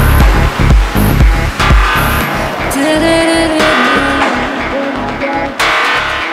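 Electronic house music track. A steady four-on-the-floor kick drum runs for about two seconds, then drops out into a sparser passage of bass notes and a held synth line, with a bright crash-like hit near the end.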